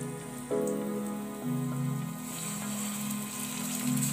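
Background music with slow, held chords that change about once a second, over a steady crackling sizzle of vegetables frying in oil in a pot.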